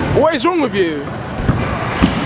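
A person's drawn-out shout, its pitch rising and falling over most of the first second, then a single sharp thump about a second and a half in, with a second thump at the end, over the echoing hubbub of an indoor skatepark.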